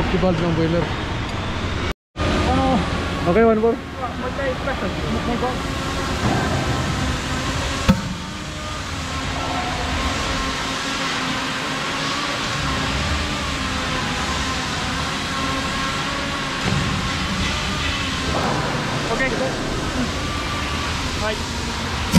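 Indistinct voices over a steady background of workshop noise.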